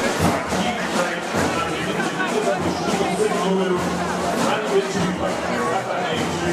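Crowd chatter: many people talking at once, no single voice standing out, with music faintly underneath.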